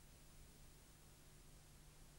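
Near silence: a faint steady hiss with a low hum, the bare noise floor of the recording over a blank grey picture.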